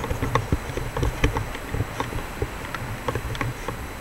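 Handling noise from a handheld Fujifilm digital camera carried on a walk: irregular small clicks and ticks over low thumps.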